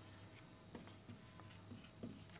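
Faint ticks and light scratching of a felt-tip whiteboard marker writing on a whiteboard, a few soft taps as the letters are formed.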